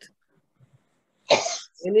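After about a second of near silence, a person coughs once: a single short, sharp burst.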